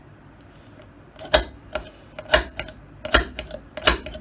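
Small hand tool knocking and clicking against a knife handle's brass pins: about six sharp, unevenly spaced strikes beginning about a second in, the first the loudest.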